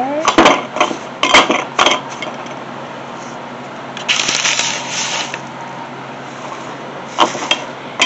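Dried, crumbled apple mint leaves rustling and crackling as they are scooped off parchment paper into a glass quart jar. There are several light clicks and knocks in the first two seconds, a longer rustle about four seconds in and a short one near the end.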